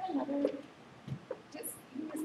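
A person's brief, low, wordless vocal sound, like a hum or murmur, in the first half second, followed by faint clicks and handling noises.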